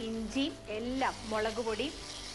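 A woman speaking.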